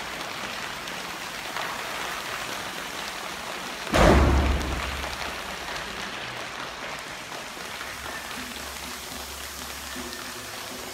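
A choir making a rainstorm sound effect: an even, hissing patter like rain, with a sudden loud low thump about four seconds in that dies away over a second or so.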